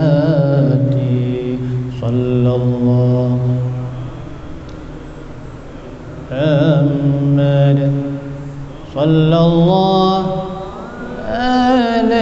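A man's solo voice chanting melismatically into a microphone in maqam Rakbi: long held notes with slow ornamented wavers, sung in phrases with a quieter breath-pause after about four seconds.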